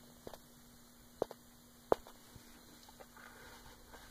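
Hot lump of melted HDPE plastic cooling in a nonstick baking pan, giving a few faint, sharp pops, the loudest about two seconds in, over a low steady hum.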